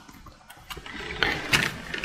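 Japanese Pokémon trading cards being handled and moved by hand: a soft rustle of cards sliding against each other, with a few light clicks.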